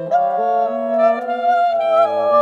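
Alto saxophone and bassoon playing long, overlapping held notes in a slow jazz-tinged chamber piece, a new, louder note entering just after the start.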